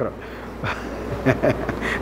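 A steady low buzzing hum under faint, indistinct voices in the room.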